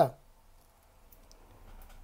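A spoken word trails off, then a pause of near-silent room tone with a few faint, light clicks in the second half.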